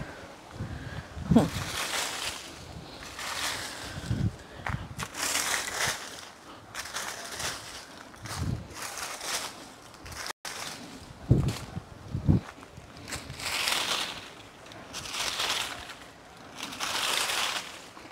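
A rake scraping through dry leaves and fallen mangoes over hard dirt, in repeated strokes about one every couple of seconds, with a few dull thuds in between.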